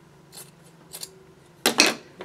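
Fabric scissors snipping through sewn cotton quilt scraps: a few faint cuts, then two louder snips near the end.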